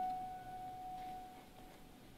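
A single high piano note ringing and fading away over about a second and a half.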